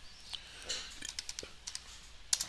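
A few faint keystrokes on a computer keyboard, typing in a short stock ticker symbol.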